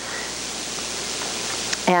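A steady, even hiss of background noise fills a pause in speech. Speech resumes right at the end.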